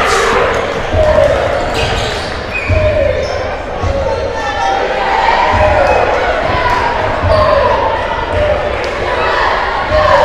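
A basketball being dribbled on a hardwood gym floor, a low thud roughly every three-quarters of a second. Voices from players and crowd echo in the large hall.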